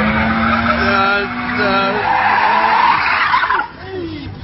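Car doing a smoky burnout: tyres screeching on the road over the running engine, fading out about three and a half seconds in. People shouting over it.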